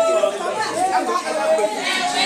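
A group of women talking and calling out over one another, their many high voices overlapping.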